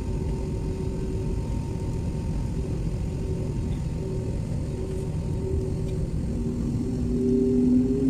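Jet airliner engines heard from inside the cabin as the plane lines up on the runway: a steady low rumble with a steady whine. Near the end a second, lower whine joins and the pitch begins to rise as the engines spool up for take-off.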